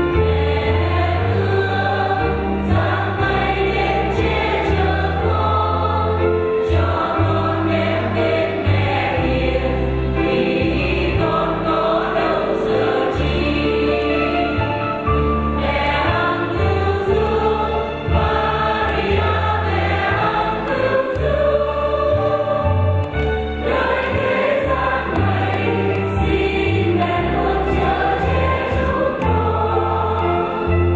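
Church choir singing a hymn in Vietnamese, with instrumental accompaniment holding a low bass line that shifts every second or two.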